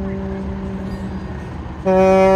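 Tenor saxophone holding one long low note that slowly fades, then a louder new note starts near the end, over a steady low rumble of traffic.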